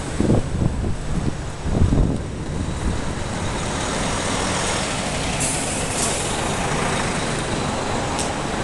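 Diesel engine of a large sightseeing coach running close by, rumbling loudly at first. A short hiss comes about five and a half seconds in.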